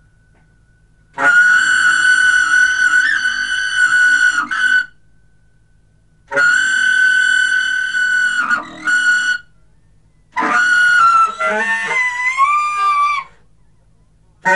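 Solo free-improvised saxophone: two long, piercing held notes high in the altissimo range, each about three seconds with a brief break or squeak near its end and a pause between, then a third phrase with the pitch bending and wavering.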